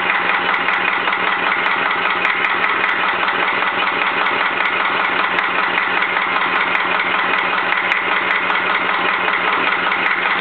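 Lister-Blackstone CE two-cylinder stationary diesel engine running steadily at an even speed, with a fast, regular beat.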